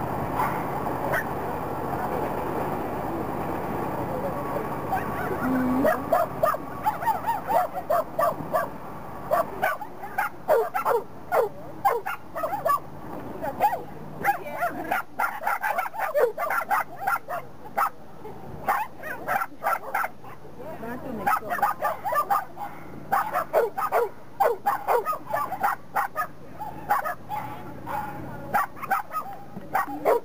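A dog barking repeatedly in short, sharp yips while it runs an agility course, starting about six seconds in and going on in rapid bursts to the end, after a few seconds of steady background noise.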